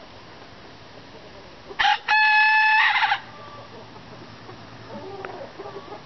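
A rooster crowing once, about two seconds in: a short opening burst, then a loud held note lasting about a second. Faint chicken clucking follows near the end.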